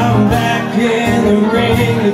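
Live acoustic music: two amplified acoustic guitars strummed, with a man singing a country-style pop song.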